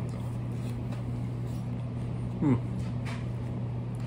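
Steady low background hum of a room appliance running throughout, with a man's short 'hmm' of approval while chewing about two and a half seconds in and a faint click a moment later.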